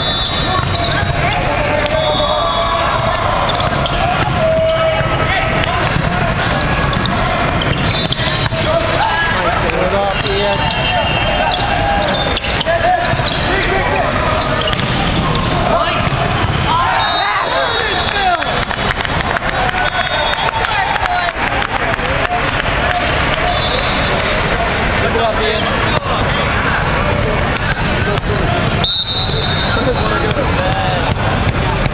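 Busy volleyball tournament hall ambience: many voices and shouts echoing across the courts, volleyballs being struck and bouncing, and short high referee whistle blasts several times.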